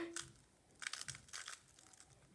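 GTS3M plastic 3x3 speedcube being turned by hand: a quick run of soft clicks from its layer turns, starting about a second in.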